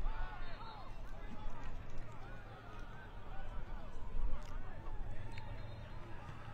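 Indistinct, overlapping voices of several people talking at a distance, over a steady low rumble.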